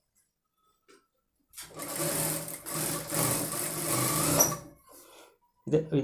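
Industrial single-needle sewing machine stitching fabric piping, starting about a second and a half in, running steadily for about three seconds, then stopping.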